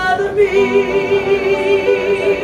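A woman singing live into a microphone. She ends one note, and about half a second in she holds a long note with a wide, even vibrato.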